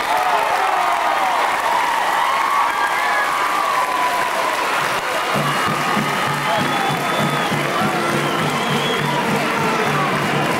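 Stadium crowd cheering and applauding, with scattered shouting voices. About halfway through, music with a regular beat joins in over the crowd.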